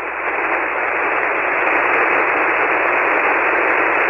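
Hiss of band noise from a shortwave receiver on 40-metre single sideband, filling the narrow voice passband with no signal on the frequency, slowly growing louder.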